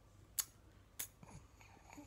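Smartphone camera shutter clicking twice, about half a second apart, as selfie photos are taken.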